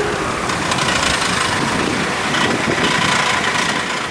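A motor vehicle's engine running steadily, with a loud, even wash of road or engine noise.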